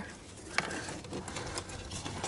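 Faint handling sounds of a wiring lead being fished behind plastic dashboard trim: soft rustling and a few light clicks of the wire and its connector against the panel, one about half a second in.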